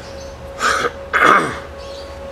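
A person clearing their throat: two short rough bursts about half a second apart, the second one louder with a dropping pitch.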